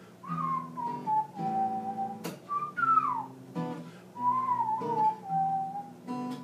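A man whistling the song's melody over strummed acoustic guitar chords. The whistle holds notes at one pitch and slides down once about halfway through.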